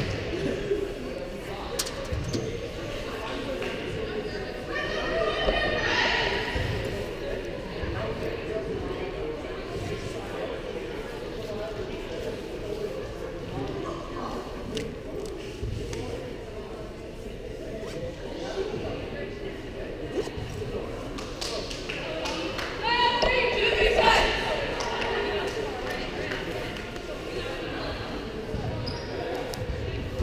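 Murmur of players and spectators talking in a large gymnasium, with sharp knocks of a ball bouncing on the hardwood floor now and then. Louder raised voices stand out about five seconds in and again around twenty-three seconds.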